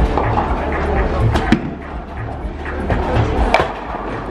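Bowling alley: a bowling ball rolling down the lane with a steady low rumble, and sharp cracks of pins being struck, the loudest near the end. Background music with a faint beat runs underneath.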